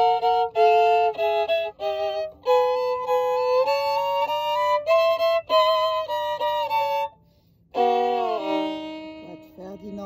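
Solo violin playing a phrase of short bowed notes, then a slower line of held notes climbing step by step. After a brief break about seven seconds in, one lower note is sustained and fades away.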